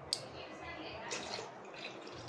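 A sharp click just after the start, then faint dripping and trickling of water into a steel vessel.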